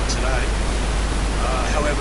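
A steady, even hiss that does not rise or fall, with a voice faintly heard beneath it.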